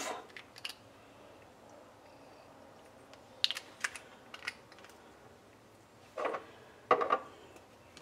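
Small clicks and taps of little glass essential-oil bottles and their caps being handled, in an otherwise quiet room, with two short louder sounds about six and seven seconds in.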